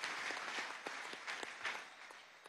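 Audience applauding, a scatter of hand claps that fades away.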